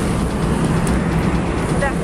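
Honda Supra GTR motorcycle engine running steadily, just restarted after stalling.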